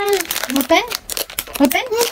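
Plastic snack wrapper crinkling in a toddler's hands, mixed with the toddler's short vocal sounds.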